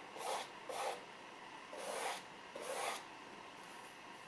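Paintbrush working oil paint: four short, scratchy rubbing strokes of the bristles, two close together at the start and two more about a second later.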